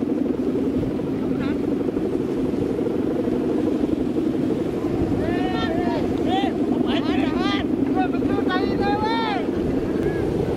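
Steady low drone of a Balinese kite's guwangan, the humming bow strung across its top, vibrating in strong wind. People's voices come in over it from about halfway through.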